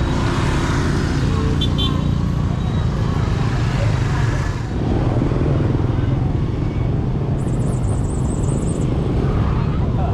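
Street traffic of motorbikes and scooters running and passing close by, a steady engine rumble, with a short high beep about two seconds in.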